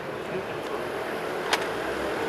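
City street background: a steady hum of distant traffic with faint voices, and one sharp click about one and a half seconds in.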